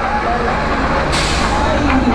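Engine of a road tourist train running close by, with a sudden hiss of air brakes about a second in that fades away.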